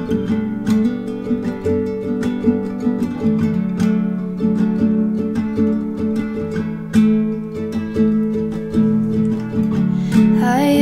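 Acoustic guitar played with the fingers, strumming and plucking chords in a steady rhythm.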